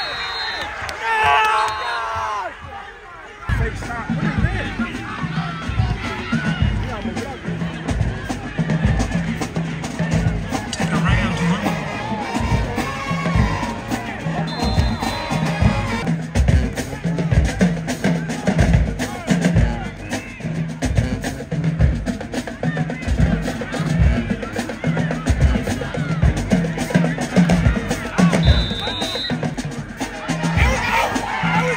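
Drums beating a steady, driving rhythm with a deep bass drum, starting a few seconds in and running on under crowd chatter.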